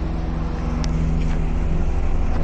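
Steady low machine hum, with a single short click about a second in.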